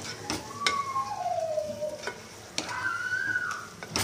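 Wooden spatula stirring chopped vegetables and spices in a nonstick kadai over a light sizzle, with a few knocks against the pan and some drawn-out squeaks as it scrapes.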